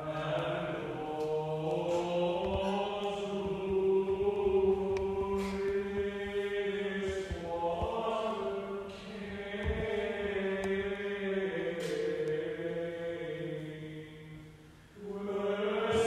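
Liturgical chant sung on a nearly steady reciting pitch in long held phrases, with a short break near the end.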